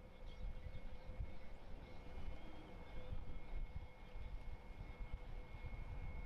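Faint, low, uneven rumble of boat engines idling, with a thin steady hum over it.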